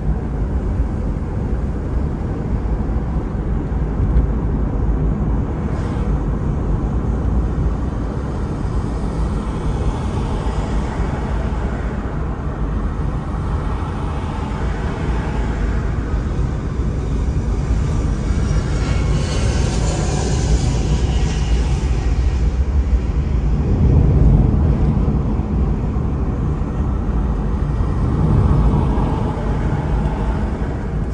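A car driving along a paved road: a steady low rumble of engine and tyre noise, growing louder twice near the end.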